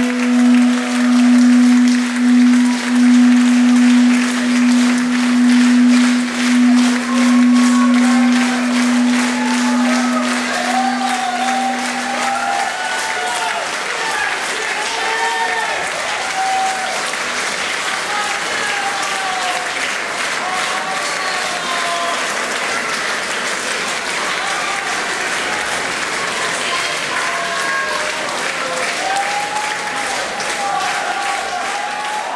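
A last held, pulsing note of the song dies away about twelve seconds in. Audience applause with voices calling out carries on after it.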